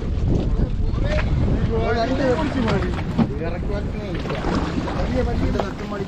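Men's voices talking and calling back and forth over a steady low rumble of wind buffeting the microphone.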